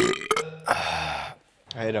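A man burping loudly: one drawn-out belch of about a second and a half with a sudden start, followed by a few spoken words near the end.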